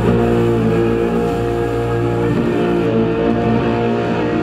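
Post-rock band playing live: electric guitars and bass holding a loud, steady droning chord. The highest sounds thin out near the end.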